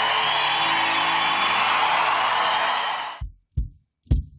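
Studio audience applauding over faint background music, the applause cutting off about three seconds in. Two short, low drum hits from a drum kit follow near the end.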